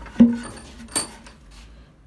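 Two knocks from handling wooden bağlama bowls: a thud with a short low ring, then a sharp click about a second in.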